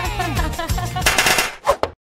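Background music, then, about a second in, a short harsh rattling sound effect followed by two quick sharp hits. The sound cuts out abruptly at a scene transition.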